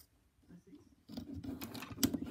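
Faint rubbing and light ticks of rubber loom bands being stretched over clear plastic Rainbow Loom pegs, mostly in the second half.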